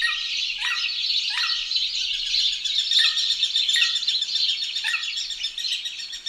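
Birdsong ambience: a dense chorus of small birds chirping, with one call that drops in pitch repeating about once a second.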